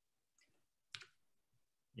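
Near silence with one faint, short click about a second in.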